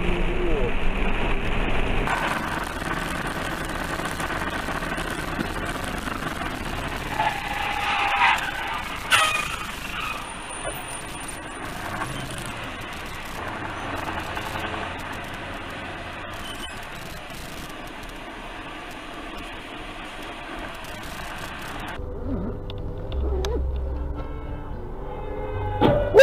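Steady road and engine noise heard inside moving vehicles, recorded by dashcams. The character of the noise changes abruptly at cuts about 2 and 22 seconds in, and a few sharp knocks come about 8 to 10 seconds in. In the last few seconds there is a lower engine drone.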